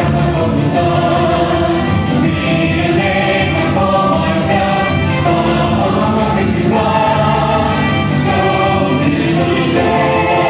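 Mixed-voice show choir of seven singing in harmony through handheld microphones, holding long chords.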